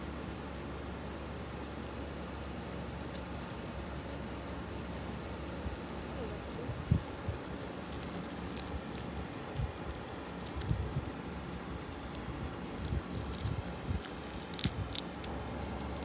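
A plastic sweet wrapper crinkling between fingers as it is picked open, a scatter of small crackles through the second half, over a steady low hum.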